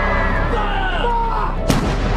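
A single cannon shot near the end, over background music with gliding pitched tones.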